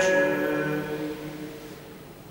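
An unaccompanied choir holding a final chord of several voices. The chord fades out about three quarters of the way through into a long reverberation of a large stone church.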